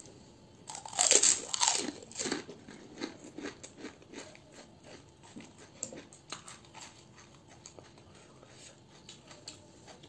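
Crisp fried puchka (pani puri) shell crunching loudly as it is bitten, about a second in, followed by close-up chewing with many small crunches.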